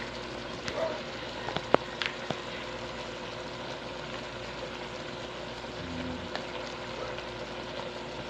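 Pot of pinakbet vegetables simmering on a gas stove with a steady low hiss. A few light clicks and knocks come in the first two seconds, the sharpest just before two seconds in, as sliced eggplant is tipped into the aluminium pot.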